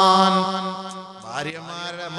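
A man's voice chanting, holding one long melodic note that fades out a little over a second in. His voice then carries on more quietly in shorter syllables.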